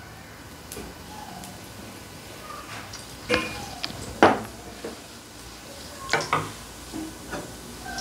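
Cooking oil heating in a hot stainless steel wok over a gas burner: a low steady hiss, with a few sharp clicks a little after the middle and faint short high-pitched sounds.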